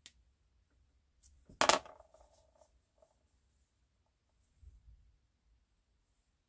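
Hand work on a small RC car shock absorber during bleeding: light plastic clicks and one sharp clack about one and a half seconds in with a brief ringing tail, then a soft bump near the five-second mark.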